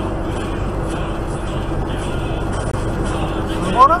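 Steady in-cab drone of a vehicle travelling at highway speed, road and engine noise with a constant low hum underneath.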